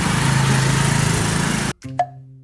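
Small motor scooter engine running steadily as the scooter rides along, with wind and road noise. The sound cuts off abruptly near the end and a sharp knock follows.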